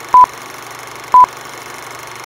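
Film-leader countdown sound effect: two short, loud, high beeps about a second apart over a steady hum and hiss.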